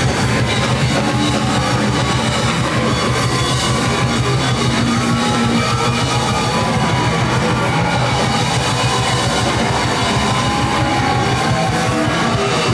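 Live rock band playing loudly and steadily: electric guitars and drum kit.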